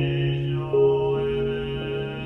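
A male Buddhist priest chanting a sutra on one steady low pitch, over ambient background music with sustained notes.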